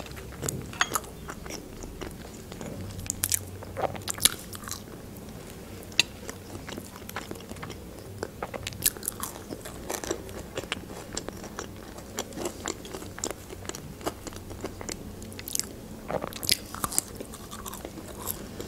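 Close-miked chewing of KFC French fries, with scattered crisp crunches and small wet mouth clicks.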